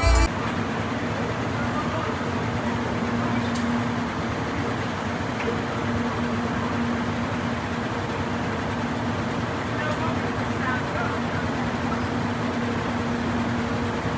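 Ambient noise of a busy amusement-ride loading station: a steady low machine hum under a dense wash of background noise and indistinct voices.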